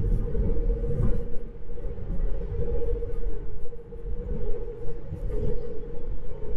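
Road and tyre noise in the cabin of a Tesla Model 3 at highway speed, about 70 mph: a steady low rumble with a thin hum over it and no engine sound, since the car is electric.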